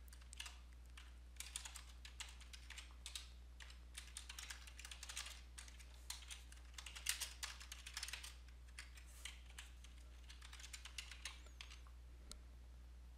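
Typing on a computer keyboard: faint runs of keystroke clicks broken by short pauses, over a low steady hum.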